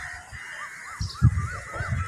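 A bird calling in a quick run of short, arched notes, about four a second, starting about half a second in, with low knocks underneath.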